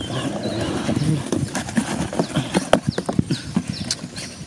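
A cardboard box being picked up and handled, with many quick irregular knocks, clicks and scrapes. From about two seconds in come several short, high chirps that fall in pitch.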